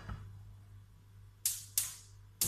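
Two sharp clicks from a gas hob's spark igniter, about a third of a second apart near the end, as a burner is being lit.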